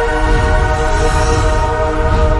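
Logo-reveal intro music: a held chord of many steady tones with a low rumble swelling beneath it and a soft whoosh about a second in.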